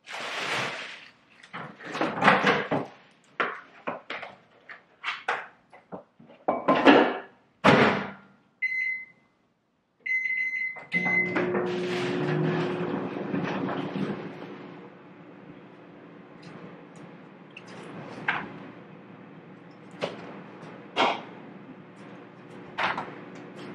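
Plastic takeout bag rustling and food containers clattering, then keypad beeps and an RCA microwave oven starting up with a steady hum as it heats the food. A few sharp knocks come near the end.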